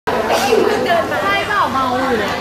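Speech: a person talking in Thai over the chatter of others.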